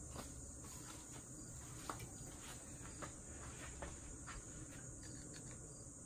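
Faint steady high-pitched insect chirring, typical of crickets, with a few faint light knocks scattered through.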